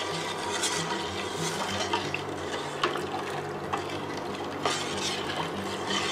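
A stainless steel ladle stirring sugar water in a stainless steel pot: a steady swish of liquid with a few light clinks of metal on the pot, as a pound of table sugar is dissolved into the warming water. A faint steady low hum runs beneath it.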